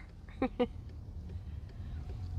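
Car engine idling as a low, steady hum in the cabin, with two short vocal sounds about half a second in.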